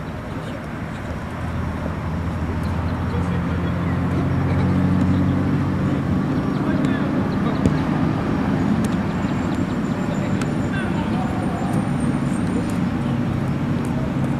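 A motor vehicle's engine running steadily close by, a low hum that grows louder about two seconds in and then holds.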